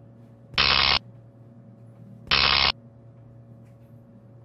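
Electrical sound effect: a steady low hum, broken twice by a loud crackling buzz about half a second long, the two buzzes a little under two seconds apart, like high-voltage apparatus arcing.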